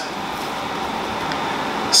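Steady hiss and low hum of room noise, with no other clear sound.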